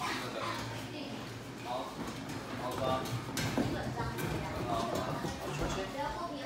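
Indistinct voices in a large, echoing hall, with a few sharp knocks about three and a half seconds in.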